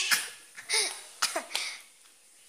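A girl coughing several times in short bursts, then a brief quiet.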